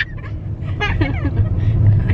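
Steady low rumble of a car being driven, heard from inside the cabin, with a brief voice over it about a second in.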